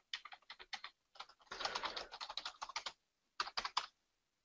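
Computer keyboard typing: quick runs of keystrokes, a dense run through the middle and a short burst near the end.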